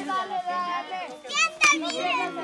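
Children's voices shouting and chattering, with a rising shout and a sharp knock about one and a half seconds in.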